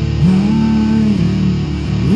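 Goth rock song with electric guitars and bass playing an instrumental passage. A sustained note slides up into pitch about a quarter second in, holds, and falls away after about a second; another slides in near the end.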